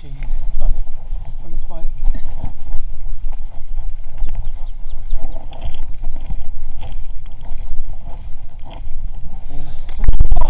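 A 1994 GT Zaskar LE mountain bike rolling down a gravel track, its tyres on loose stones under a heavy rumble of wind on the microphone.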